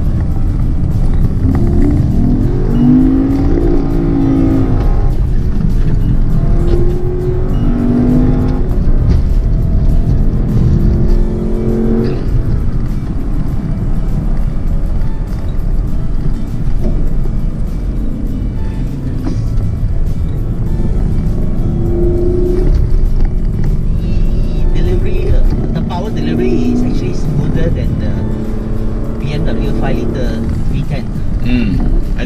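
Lexus LC 500's 5.0-litre V8 being driven hard up a winding hill climb, heard from inside the cabin, its note rising and falling in pitch as it accelerates and eases off.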